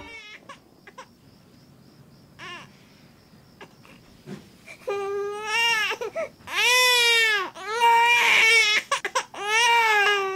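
An infant crying: a few faint short whimpers at first, then from about five seconds in, loud wailing cries, several in a row with short breaths between.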